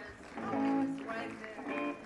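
A guitar played on stage, with notes or a chord ringing for about a second and a half through the hall's sound system, amid stage talk.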